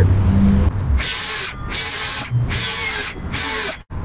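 Circular saw cutting 30-degree angled ends on 2x6 boards for table legs: four short cuts of about half a second each, one after another, the last cut off suddenly near the end.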